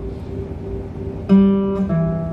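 Acoustic guitar playing a slow beginner's single-note melody. After a quiet start, the open third (G) string is plucked, followed just before the end by a lower note on the fourth string.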